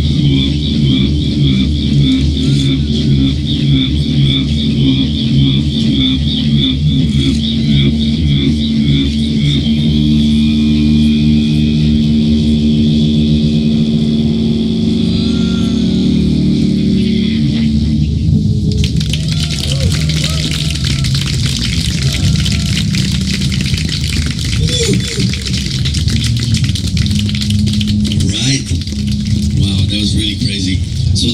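Saxodidge (coiled, saxophone-shaped didgeridoo) played live: a low drone with overtones, pulsing rhythmically at first, then held steady. About two-thirds in, the sound turns noisier, with voice-like calls sung through the instrument over the drone.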